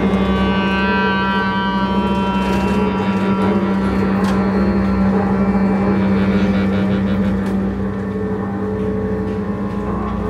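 Live free-improvised music for bowed double basses, clarinet and saxophone. A low drone is held throughout, with several high sustained reed tones layered over it in the first two or three seconds.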